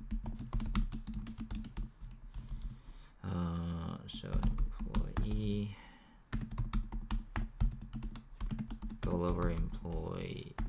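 Rapid typing on a computer keyboard, a dense run of keystroke clicks that pauses twice for a few short murmured vocal sounds in the middle and near the end.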